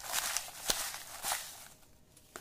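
Small folded paper slips rustling in a bowl as they are shaken, with a light tap partway through; the rustling stops shortly before the end.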